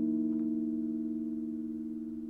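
The last chord on an electric guitar ringing out, held and fading steadily away with no new notes played.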